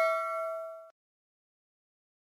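Notification-bell "ding" sound effect ringing out and fading, its clear tone cut off abruptly about a second in.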